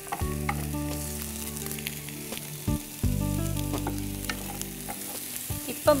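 Whole prawns frying in oil with chopped garlic in a pan, a steady sizzle, with a wooden spatula stirring and knocking against the pan a few times.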